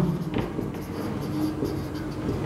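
Marker pen writing on a whiteboard: faint scratching strokes.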